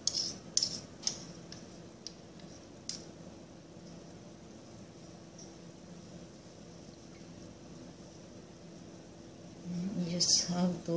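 A few light clicks of a kitchen utensil against a baking pan while condensed milk is spread over sticky cake batter, mostly in the first three seconds, over a steady low hum.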